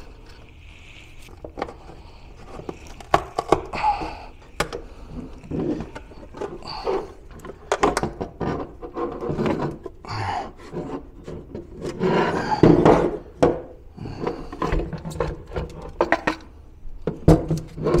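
A LiFePO4 battery's cell pack being forced out of its tight-fitting plastic case: irregular scraping and rubbing of plastic against plastic, broken by many small knocks, with the longest and loudest stretch of scraping about twelve seconds in.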